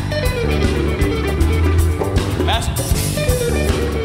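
Live band playing an instrumental passage of a gospel song: guitar melody over bass and drum kit with a steady beat, with one note that swoops up and back down past the middle.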